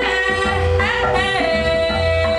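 Live band music: a woman singing long held notes, sliding up into a new note about a second in, over electric guitar and a drum kit.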